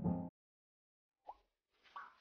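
Background music that cuts off suddenly just after the start, then silence broken by two short blips near the end, under a second apart.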